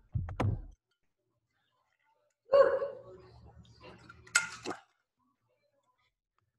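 A man breathing heavily close to the microphone, catching his breath after a hard exercise set. There are a couple of short breaths right at the start, then about two seconds of silence, then a longer run of breaths ending in a sharp exhale about four and a half seconds in.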